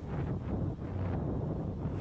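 Wind buffeting the microphone of a moving motorcycle, a steady rushing noise with a low hum beneath it.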